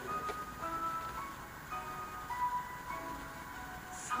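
Slow instrumental introduction music: a simple melody of clear held notes, changing about once a second, heard through a television's speaker.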